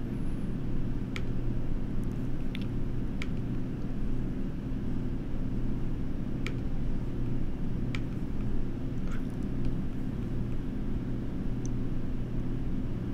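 Steady low hum, with several short sharp computer-mouse clicks spread through it as menus and dialog buttons are clicked.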